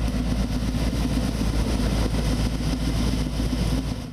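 Engine of an amphibious multipurpose pond-cleaning machine running steadily.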